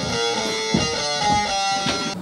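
Electric guitar sound playing a melody of held single notes that step up and down.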